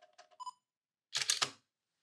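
Nikon digital SLR taking a picture: a few faint clicks and a short electronic beep, then about a second in the loud clack of the mirror and shutter firing.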